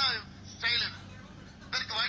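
A man making a speech in Tamil into a microphone, heard off a television speaker, in short phrases broken by pauses. A steady low hum runs underneath.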